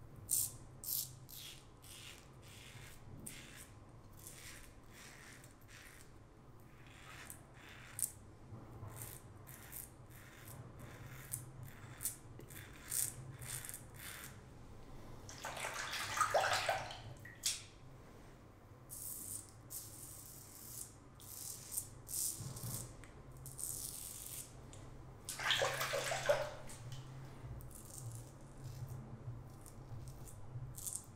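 Morris Stainless safety razor scraping through lathered stubble in short, repeated strokes. A burst of running tap water about halfway through and another near the end, as the razor is rinsed.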